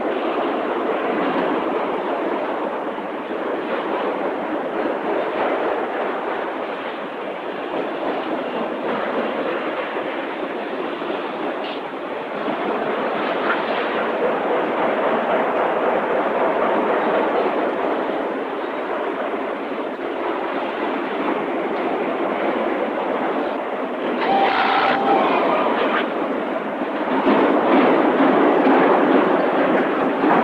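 Steady din of a car-body assembly line, with machinery clatter and hand-held power tools and welding guns at work. It grows louder for a few seconds near the end.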